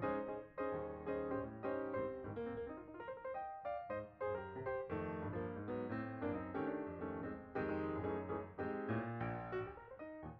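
Background piano music: a steady flow of notes with a low accompaniment underneath.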